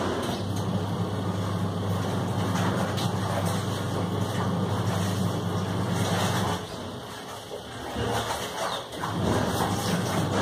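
A steady low mechanical hum, like an engine or motor running, that drops away about six and a half seconds in and comes back near the end.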